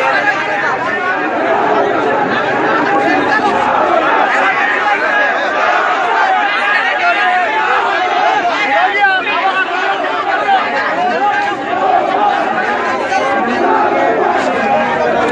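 Dense crowd of many people talking at once, a steady, loud din of overlapping voices.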